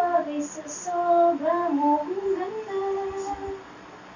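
A high voice singing a tune in a few held, sliding notes, stopping about three and a half seconds in.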